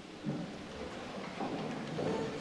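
A church congregation sitting back down in wooden pews: a low, rumbling mass of shuffling, rustling and knocks from many people at once, with faint murmured voices.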